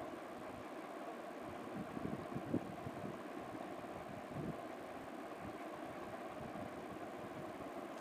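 Faint steady background hum, with a few soft taps as a knife cuts through a slab of rolled flour dough and meets the metal plate beneath, about two seconds in and again a little past four seconds.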